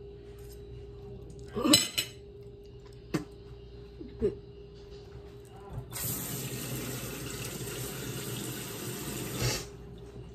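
A few short, sharp noises, the loudest about two seconds in. Then a kitchen tap runs into a stainless steel sink for about three and a half seconds and is shut off.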